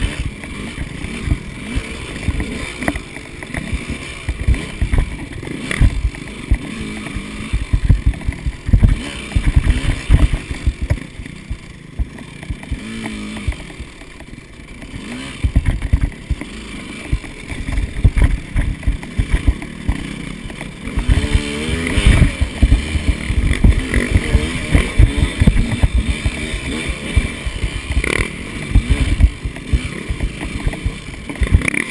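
Two-stroke enduro dirt bike, a KTM 200 XC, riding a rough rocky trail, the engine revving up and down with the throttle, with a burst of revving a little past two-thirds of the way through. Constant low knocks from the bumpy ground and wind on the microphone run under the engine.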